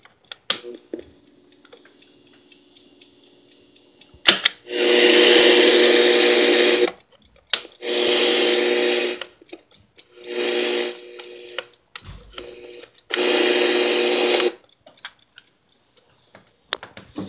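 Cassette player in a digital alarm clock: button clicks, then the tape mechanism's motor whirring in four separate runs of about two seconds or less, as the tape is wound at speed.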